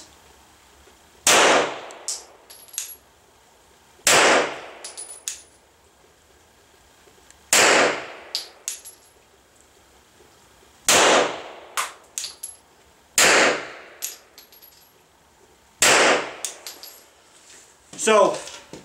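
Six slow, deliberate 9mm shots from a Glock 34 pistol, spaced about two and a half to three and a half seconds apart, the trigger being reset between shots. Each shot is followed by a few light clicks and faint high rings from spent brass landing.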